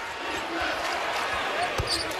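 Arena crowd noise with a basketball bouncing on the hardwood court, one sharp thump near the end.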